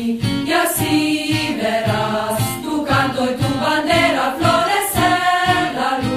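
A song sung by a group of voices over a steady beat, its lyrics calling on listeners to come marching together and see their flag blossom.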